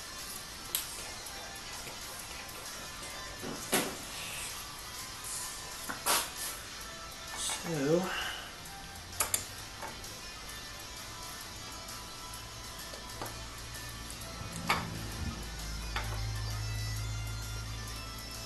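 Faint background music with a handful of sharp metallic clicks and light knocks from a camshaft being handled and set into an aluminium cylinder head. A low hum comes in partway through and grows louder near the end.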